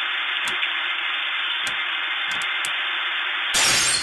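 Intro-sequence sound effects: a steady, thin static hiss with scattered crackles, like an old radio or TV. Near the end it gives way to a loud crash of shattering glass.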